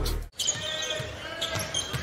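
A stretch of music cuts off suddenly, then arena crowd noise follows with a basketball being dribbled on the hardwood court.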